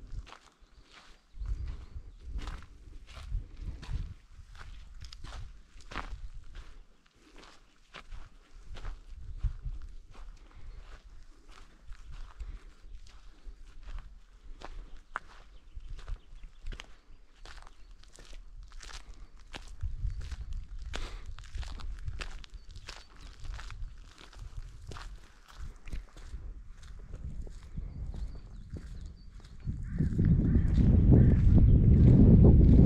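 Footsteps of a person walking at a steady pace over a dirt and gravel path, each step a short crunch.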